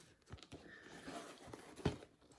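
Faint handling noise of a cardboard Blu-ray box set being turned over in the hands, with a soft click early on and a sharper knock near the end.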